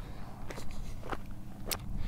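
Footsteps of a person walking, three steps about half a second apart, over a steady low rumble.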